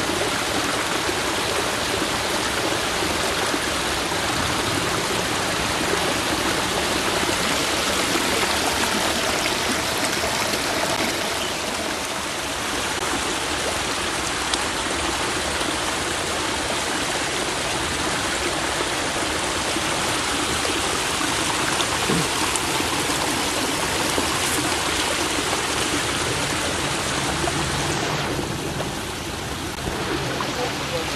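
Mountain stream running over rocks and small cascades, a steady rushing wash of water that dips briefly near the end.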